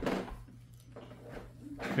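Quiet room sound with a low steady hum; a voice starts near the end.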